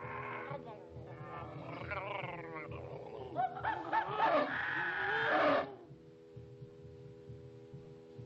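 Cartoon monsters growling and roaring over held music chords; the roars break off about two thirds of the way through, leaving the quieter chord.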